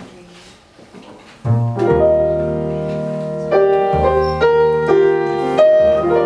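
Piano and plucked double bass start a jazz number about a second and a half in, after a quiet pause. The piano plays a sequence of sustained chords over a low bass line, changing about every half second to second.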